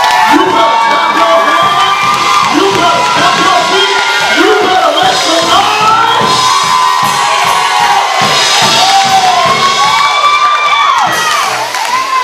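A church congregation loudly shouting and cheering in praise all at once, many voices calling out over one another.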